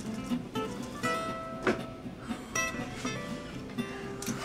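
Music: an acoustic guitar playing plucked notes.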